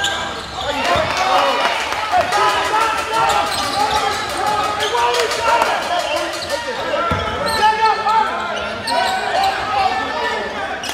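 Basketball dribbled on a hardwood gym court in live play, with the voices of players and spectators calling out throughout.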